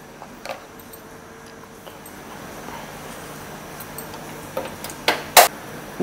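Cumin seeds sizzling faintly in hot oil in a pan, with two sharp metallic clinks a little after five seconds in.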